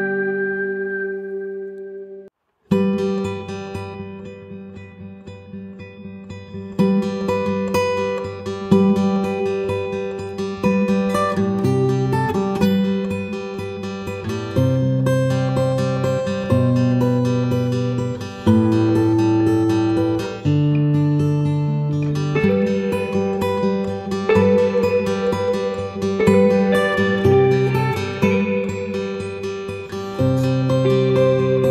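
Background music: acoustic guitar plucking and strumming chords, each note ringing and fading. The music cuts out briefly a little over two seconds in, then starts again.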